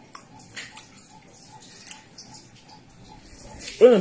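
Soft mouth sounds of someone eating pounded yam with her fingers: faint chewing and smacking clicks. A voice starts near the end.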